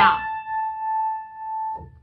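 A single high A played on the piano, struck once and ringing on for nearly two seconds as it fades away.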